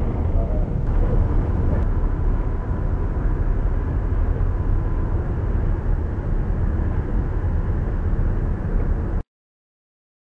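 Steady low rumble of a container ship's bridge under way: engine and machinery noise, with a faint steady whine for a few seconds in the middle. The sound cuts off abruptly near the end.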